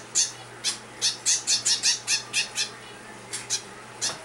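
Zebra finch fledgling giving a run of short, high-pitched begging calls, about a dozen in quick succession, then two more after a brief pause. The chick is still hungry after a hand feeding.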